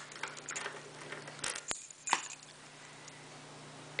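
A small ring of brass lock keys lifted off a sheet of paper and handled, giving a few light clinks and rustles in the first two seconds.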